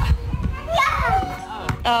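Young children's voices chattering, with a single sharp thump near the end. Music starts just before the end.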